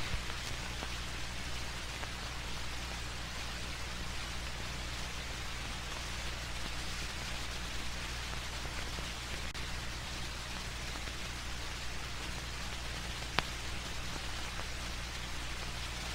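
Steady hiss and low hum of an old film soundtrack, with a single click about thirteen seconds in.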